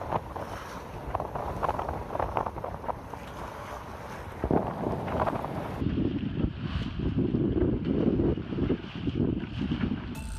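Wind buffeting the microphone on the bow of a sailboat under way, over the rush of the sea along the hull. The buffeting grows heavier and gustier in the second half.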